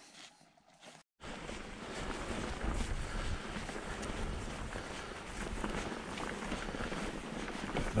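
A mountain bike rolling along a rough, muddy grass track, starting suddenly about a second in: steady tyre and wind noise buffeting the action camera's microphone, with small rattles from the bike. Before that there is a second of near silence.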